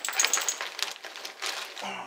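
Gear being handled and set down: a quick string of small clicks and light clinks, with plastic packaging crinkling.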